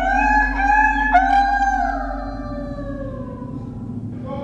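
Voices of people held in a solitary confinement unit wailing and howling: long, drawn-out cries that overlap and slide slowly down in pitch, over a steady low hum.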